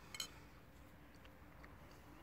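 A single brief sharp click a moment in, over otherwise near silence.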